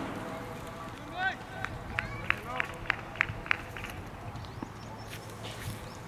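Cricket players calling out across an open ground, with a quick run of about six short, sharp claps in the middle.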